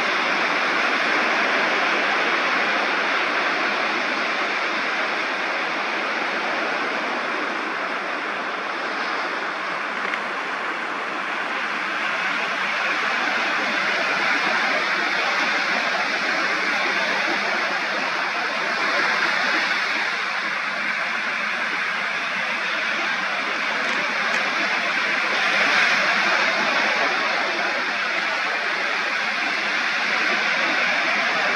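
Ocean surf breaking and washing up a sandy beach: a steady rushing wash of waves that swells a little twice in the second half.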